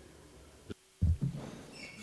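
Conference microphone switching over to the next speaker. There is a click, a moment of dead silence, then a loud low thump about a second in that fades into faint handling noise.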